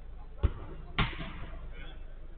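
A football being kicked on an artificial-turf five-a-side pitch: two sharp thuds about half a second apart, the second with a short ring after it.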